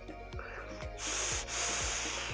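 Airy hiss of a long drag drawn through an iJoy Jupiter vape mod, starting about halfway in with a brief break, over background music with a steady beat.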